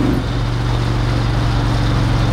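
Engine of a Dodge Charger-bodied car on a NASCAR chassis running steadily at cruising speed, heard from inside the cabin as a loud, even drone that holds one pitch.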